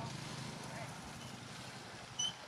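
A vehicle engine idling: a low, steady hum with a fine regular pulse, fading slightly over the two seconds.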